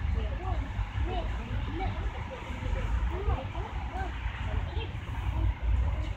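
Street background: a strong, uneven low rumble from traffic and the microphone, with a voice talking in short syllables over it.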